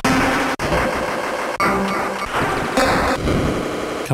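Arturia MiniFreak synthesizer playing a gritty, bit-crushed glitch patch built on its speech oscillator, with the delay effect chopping the notes into stuttering beat-repeat fragments and sudden breaks.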